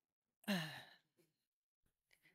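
A person sighs once about half a second in: a short, breathy voiced exhalation that falls in pitch. A couple of faint clicks follow.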